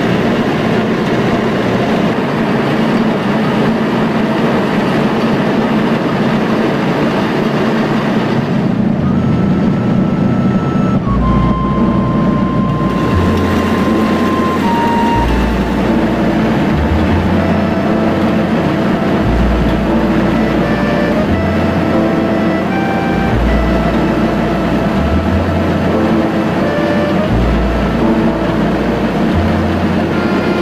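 A grain-milling machine runs with a steady, loud noise as ground grain pours from its chute. About ten seconds in, background music with a slow melody and stepped bass notes comes in and plays over the machine noise.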